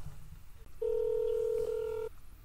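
A telephone ringback tone from a phone on speakerphone: one steady beep starting a little under a second in and lasting just over a second, the ring of an outgoing call.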